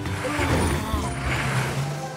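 Cartoon sound effect of a motor vehicle's engine running, a steady low hum with noisy rumble, over background music.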